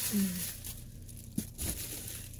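Thin plastic shopping bag crinkling as a hand rummages in it, with a single sharp click about one and a half seconds in.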